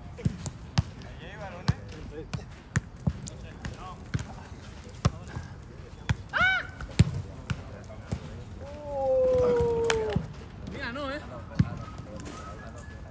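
A football being kicked and volleyed back and forth in the air: a string of sharp thuds of boot on ball at irregular spacing. Players' voices break in with short shouts, and one long drawn-out call runs from about nine to ten seconds in.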